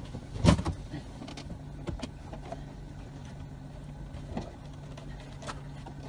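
A boat motor runs with a steady low hum while the hull and landing-net frame take several knocks and bumps as a bear cub clambers aboard. The loudest knock comes about half a second in.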